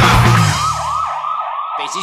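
A loud punk band track cuts off about half a second in, leaving a police siren in fast yelp, a quick rising-and-falling wail about five times a second. Near the end the siren starts to wind down in pitch.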